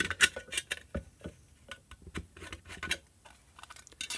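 Irregular small clicks, taps and scrapes as a screwdriver prises the reflector out of a small LED floodlight's metal housing.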